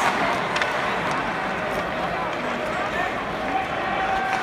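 Steady murmur of a large crowd in an ice hockey arena during play, with indistinct voices from nearby fans and a few faint clicks.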